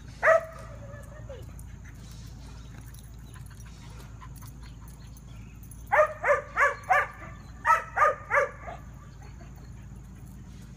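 A single drawn-out call about a third of a second in, then two quick series of short, evenly spaced calls, four and then three, about four a second, from a dog or crows.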